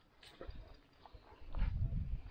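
A Turkish shepherd dog making low sounds right beside the camera while being petted, loudest near the end.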